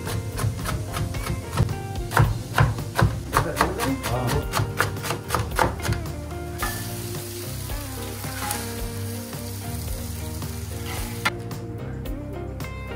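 Knife chopping a breaded fried cutlet on a plastic cutting board, quick strokes about three or four a second, over background music. Then, about halfway through, a steady sizzle of food cooking on a hot surface takes over.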